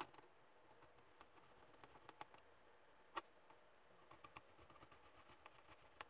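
Near silence with a few faint, scattered clicks and taps from small laptop parts being handled and fitted, the most distinct about three seconds in.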